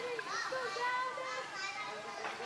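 Background chatter of several voices at once, children's voices among them.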